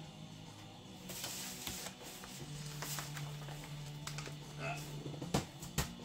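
Quiet background music with a low sustained note through the middle. Over it, rustling about a second in and a few light clicks near the end, from a vinyl record and its sleeve being handled.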